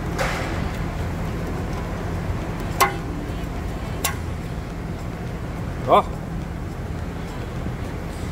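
Steady low mechanical hum of shop machinery, with sharp clicks about three and four seconds in and a brief rising voice-like sound about six seconds in.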